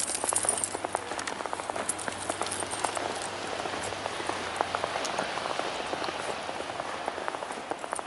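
Footsteps crunching through fresh snow, a steady crackle of fine ticks, slightly louder in the first second.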